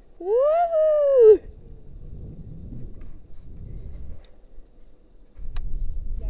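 A woman's high-pitched wail, rising then falling in pitch, lasting about a second, uttered in fright while dangling on a bungee-type jump rope. After it comes a low rumbling noise on the microphone, dropping away for about a second near the end.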